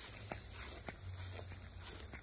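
Footsteps on grass, soft and faint, about two a second, over a low rumble on the phone microphone.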